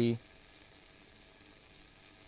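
A spoken word ends just in, then near silence: a faint steady hiss with a thin, high, steady whine, no guitar being played.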